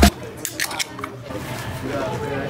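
A few light clicks from an aluminium drink can being handled and cracked open.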